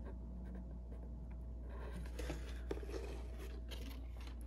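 Faint scraping and a few light ticks from hand soldering, the iron tip and solder wire working on a resistor's legs at a small circuit board's pins, starting about two seconds in, over a steady low hum.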